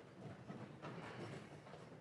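Faint room noise with a few soft knocks and shuffles, no music or speech.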